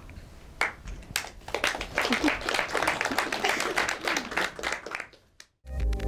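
Audience applause: many hands clapping, starting about half a second in and building, cut off abruptly about five seconds in. Near the end, electronic outro music begins.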